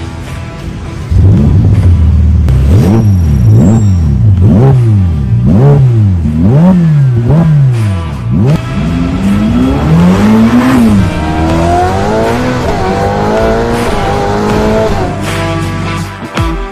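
Sports car engine revved hard in about eight quick blips in a row, each a rise and fall in pitch, then pulling up through the gears with rising pitch broken by shift drops, over background music.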